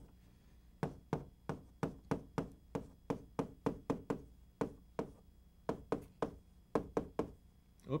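Chalk writing on a chalkboard: a run of sharp taps and clicks, about three a second, starting about a second in.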